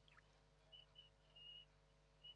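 Near silence: room tone with a steady low hum and a few faint, short, high chirps.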